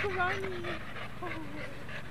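A dog whining and panting: one long falling whine near the start and a shorter one a little past the middle, over steady rhythmic panting.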